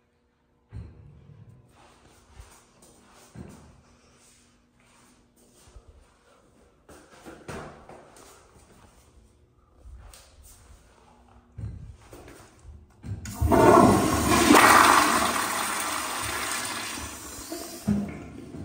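Faint clicks and handling noise, then about thirteen seconds in a commercial flushometer toilet flushes: a sudden loud rush of water that slowly fades over the last few seconds.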